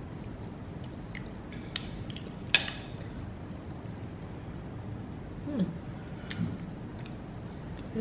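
Eating at a table: a few light clicks and taps of cutlery on a plate, the sharpest about two and a half seconds in, and a short falling "mm" about five and a half seconds in, over a steady low room hum.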